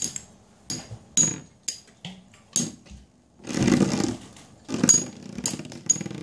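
Two Beyblade spinning tops with metal wheels clashing repeatedly in a plastic stadium: sharp, ringing metallic clinks every half second or so, with a rougher stretch of scraping contact about halfway through.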